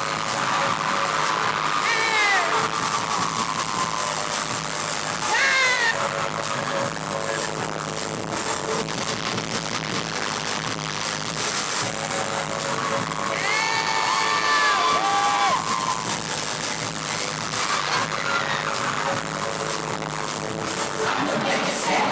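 Phone fan-cam recording of a live K-pop concert: loud music from the stage with fans screaming over it. There are sharp high shrieks about two and five seconds in, and longer held screams midway through.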